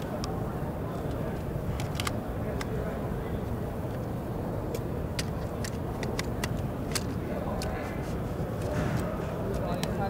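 Sharp clicks and knocks of a hard drive and its carrier being handled and slid into a drive enclosure, about a dozen in all, most between about four and seven seconds in, over steady crowd babble.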